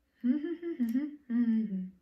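A woman humming with her mouth closed, two short wavering phrases, the second sliding down in pitch.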